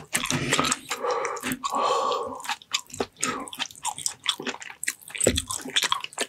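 A person chewing braised ox feet close to the microphone, with many short, sharp clicks from the mouth and a denser stretch of chewing noise in the first couple of seconds.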